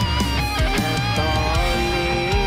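Rock band music: an electric guitar carries a bending melodic line over drum hits and a heavy low end.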